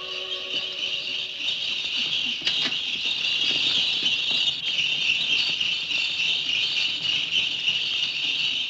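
Sleigh bells on a horse-drawn sleigh jingling steadily, as the orchestral violin music fades out in the first second.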